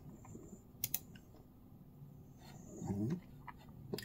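Sparse clicks from a computer keyboard and mouse as a frequency value is typed in, with a sharp pair of clicks about a second in.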